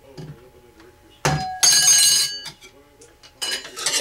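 A capacitor-discharge electromagnet pulser fires through a 100-foot wire coil with a sharp snap about a second in, launching a thin 3.5-inch aluminium hard drive platter, which rings brightly like a bell as it comes down. A second metallic clatter with ringing follows near the end.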